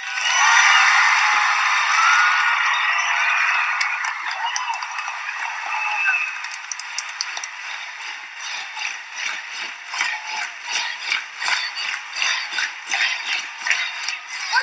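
A large crowd of students cheering and yelling, loudest in the first few seconds, then breaking into fast clapping, about four claps a second, as the cheering dies down.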